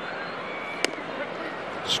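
Steady ballpark crowd murmur, with a single sharp pop a little before halfway through as a 97 mph four-seam fastball smacks into the catcher's mitt for a called strike.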